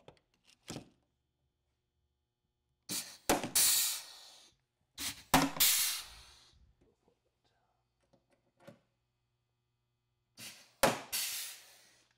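Pneumatic rivet gun setting a rivet through a steel latch into a snowmobile tunnel, cycled three times. Each cycle is a sharp click followed by a hiss of air that fades over about a second.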